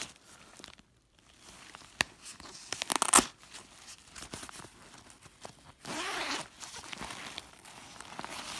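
A nylon tote bag being handled: the fabric rustles and there are sharp crinkling clicks, loudest about three seconds in. A zipper on the bag is pulled open about six seconds in.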